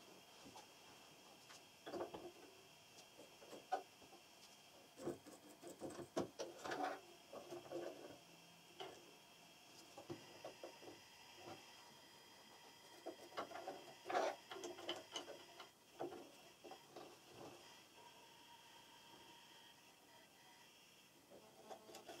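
Faint, intermittent scratching and small clicks of a little lint brush working in the bobbin area of a Janome sewing machine's horizontal hook, clearing out packed lint, in a few short bouts with quiet gaps between.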